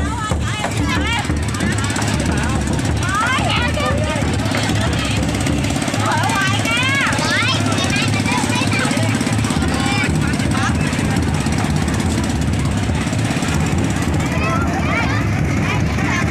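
A small engine running steadily with a fast, even rumble, under people's voices calling out.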